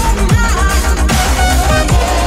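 Dubstep music playing: heavy sub-bass and hard-hitting electronic drums under synth lines.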